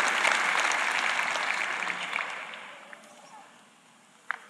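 Large audience applauding, dying away over about three seconds.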